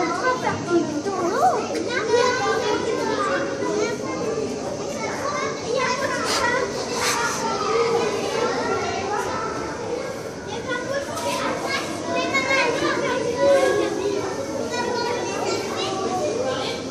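Many overlapping voices, largely children's, chattering and calling out at once, with no words standing out.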